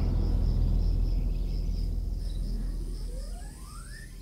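Electronic music fading out: a deep drone dies away under a high, pulsing cricket-like chirp, and a synth sweep rises in pitch near the end.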